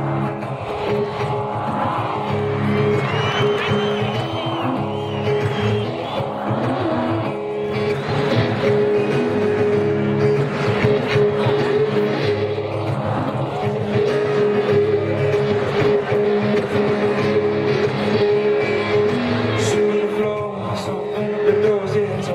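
A live band playing a song's instrumental intro: amplified guitars over a steady bass, with one note held throughout, heard from within a stadium crowd.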